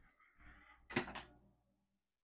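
Faint off-screen knocks: a brief soft rustle, then two quick knocks close together about a second in.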